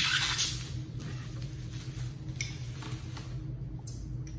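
Plastic bubble wrap crinkling and crackling as a glass bottle is pulled out of it, loudest in the first half-second, then scattered fainter crackles.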